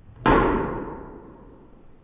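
Golf driver striking a teed ball: one sharp crack about a quarter second in that dies away over about a second.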